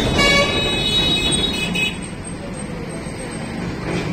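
A high-pitched vehicle horn sounds steadily for about two seconds, then stops, leaving a steady low background rumble.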